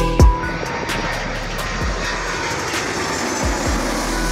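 Twin-engine jet airliner flying low overhead: a steady rush of jet engine noise that sets in about a quarter of a second in.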